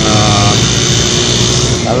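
A motorbike engine running with a steady rushing hiss, its hum easing slightly down in pitch over the first second.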